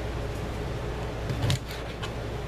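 A cleaver knocks once on a cutting board about one and a half seconds in, as it cuts through a link of smoked sausage, followed by a couple of faint ticks. A steady low hum runs underneath.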